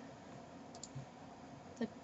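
Two quick computer mouse-button clicks, close together like a double-click, about a second in.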